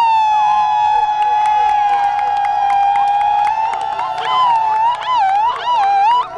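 A long, high, held vocal call from a crowd, steady at first and then wavering up and down near the end, over scattered handclaps.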